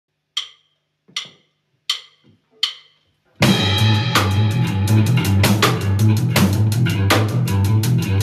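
A drummer counts in with four evenly spaced clicks, just under a second apart. On the next beat, a little before halfway, a rock band comes in together: full drum kit, electric bass and electric guitar playing an instrumental post/math rock piece.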